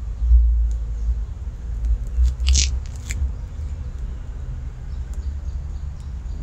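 Wind buffeting the microphone outdoors: a low rumble that rises and falls unevenly, with two short high chirps about halfway through.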